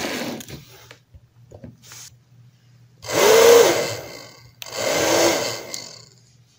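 Handheld electric blower, hair-dryer type, run in two short bursts of about a second each; its motor pitch rises as it spins up and falls as it runs down each time. Handling noise near the start.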